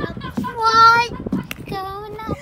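A child's high voice singing a wordless held note, then a second, slightly lower held note near the end.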